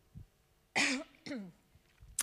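A woman clearing her throat: two short rasps with a falling voiced tail, about a second in.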